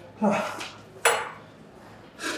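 Two sharp metallic clinks about a second apart, the second with a short ring: a weightlifting belt's metal buckle knocking against the steel bar of a Smith machine as the belt is taken off and hung on it.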